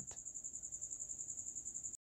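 Faint, high-pitched insect trill in the background, pulsing steadily about twelve times a second, then cutting off suddenly at the very end.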